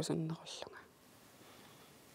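A woman's voice ending a phrase and trailing off softly and breathily, then a pause of about a second with only faint room tone.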